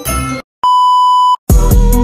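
Jingly intro music cuts off, and after a moment's gap a single steady electronic beep sounds for under a second. A new music track with a beat then starts.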